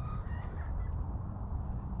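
Faint thin calls of a distant bird in the first second, over a steady low rumble.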